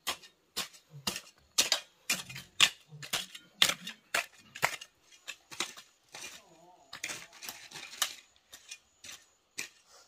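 A hand hoe's metal blade chopping into and breaking up clods of dry soil, in quick repeated strokes about twice a second, each a sharp crunchy strike.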